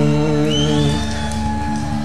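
Live Irish folk-rock band playing between sung lines, with notes held steady and a high note sliding upward about half a second in.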